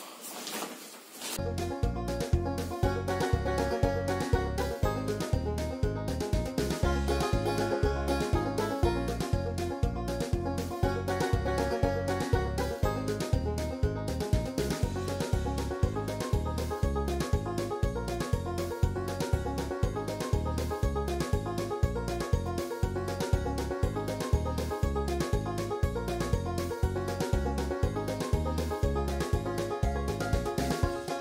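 Background music with a steady beat under a layered melody, starting about a second in.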